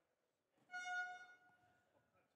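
A single high note rich in overtones, starting about half a second in and fading away over about a second.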